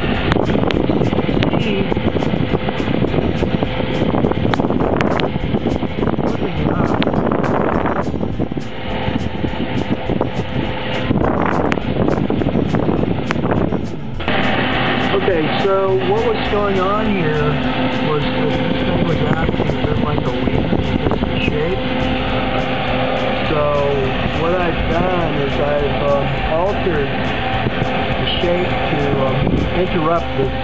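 Kitchen range-hood exhaust fan running, a loud steady rush of air blowing up into a galvanized vent pipe that holds a test flapper valve. About halfway through, the fan's sound shifts and a steadier hum comes in.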